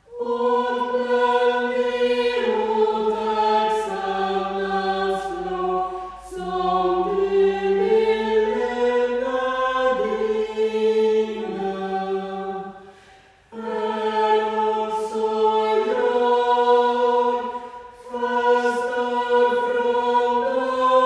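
A small vocal group singing a slow piece in parts, holding long chords in phrases, with short breaks between phrases about six, thirteen and eighteen seconds in.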